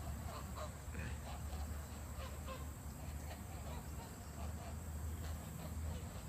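A flock of white domestic ducks giving many short, faint quacks and honks, overlapping and scattered throughout, over a steady low rumble.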